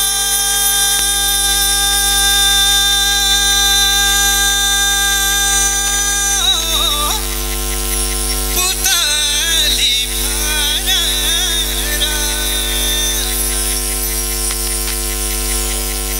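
A male singer performs live through a PA system, backed by a keyboard. A long steady held tone lasts about the first six seconds, then wavering, ornamented vocal phrases come in over sustained keyboard chords.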